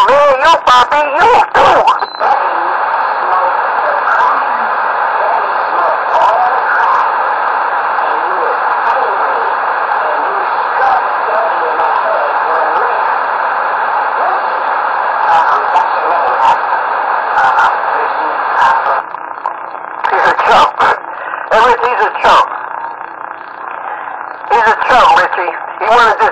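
CB radio receiver carrying a keyed-up transmission: a steady rush of narrow-band noise with faint, garbled voices buried under it, then from about nineteen seconds in, louder, choppy bursts of distorted talk.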